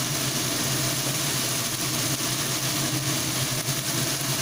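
Masala frying in hot mustard oil in a kadai, a steady sizzle, over a low, constant hum.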